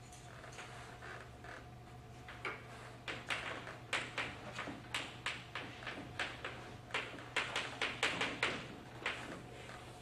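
Chalk writing on a blackboard: a quick run of short taps and scratchy strokes, several a second, starting a couple of seconds in and going on almost to the end.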